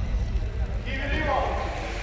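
A break in the music lets the live match sound through: a low steady rumble with faint, indistinct voices calling out.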